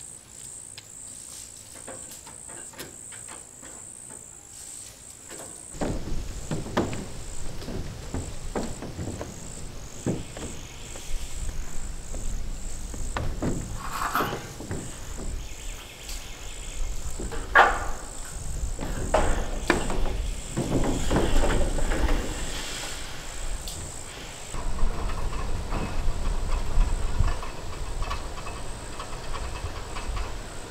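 Insects trilling steadily in a fast, even pulse. From about six seconds in, a louder low rumble with scattered knocks and clatters joins them.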